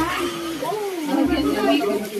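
People's voices calling out and exclaiming, with no clear words.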